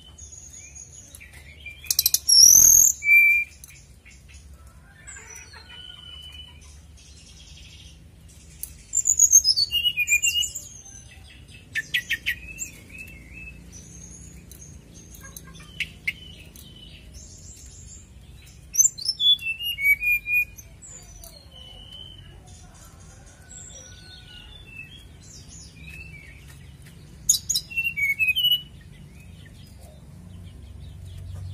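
Caged sirdadu songbird singing in loud bursts of fast trills and high whistled phrases, about five of them, with softer chirps in between.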